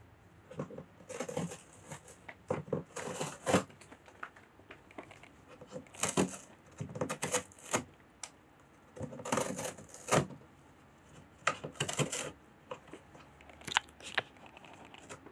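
A cat's claws and paws scratching and shuffling on cardboard, in several separate bursts of clicking and scraping a second or so long.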